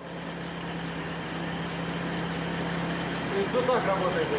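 Car engine running in first gear, turning the raised rear axle and its differential: a steady hum that slowly grows a little louder.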